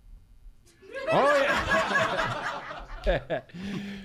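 A live audience laughing, starting about a second in and lasting about two seconds, followed by a man's brief "ouais".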